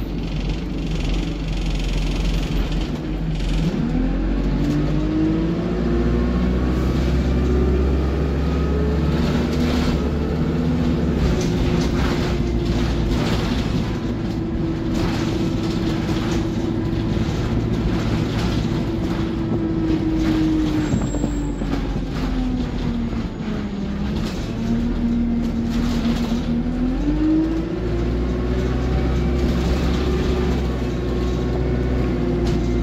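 Single-deck diesel bus heard from inside the passenger saloon, under way with a constant low rumble. Its engine and drivetrain note rises as the bus picks up speed about four seconds in, holds steady, falls away about three-quarters of the way through as it slows, then rises again near the end.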